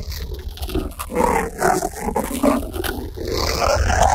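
Heavily effect-processed, distorted voice-like sounds, wavering in pitch, over a constant loud low hum, the warped audio typical of a video-editor 'G-Major'-style sound effect.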